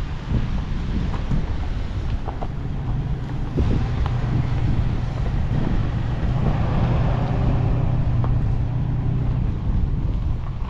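Toyota Tacoma pickup's engine running at low speed with a steady low hum as the truck creeps off over rough dirt track, with wind buffeting the microphone and a few light clicks.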